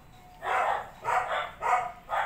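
A domestic cat making three short, raspy meows in quick succession, asking to be fed.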